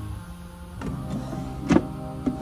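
Wooden bedside-table drawer pulled open: it slides with a knock about a second in and a louder knock near the end. Soft background music plays throughout.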